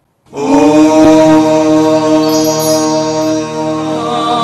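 Devotional chanting set to music: one long, steadily held low voiced note that starts abruptly about a third of a second in and carries on unbroken.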